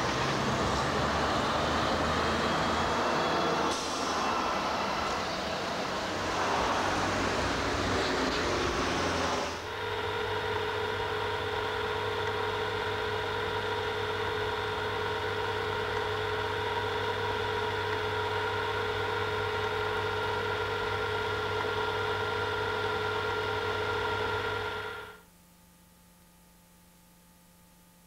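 Street traffic noise, a steady rushing haze, for about the first nine seconds. It then gives way abruptly to a steady hum of several fixed tones. The hum cuts off suddenly about a second before the end.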